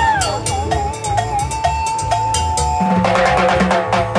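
Live rock band instrumental: an electric guitar lead holds a high note with bends and vibrato over drum kit and conga rhythm, then breaks into faster, denser playing about three seconds in.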